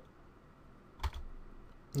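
One keystroke on a computer keyboard about a second in: a sharp key click with a low thump, against quiet room tone.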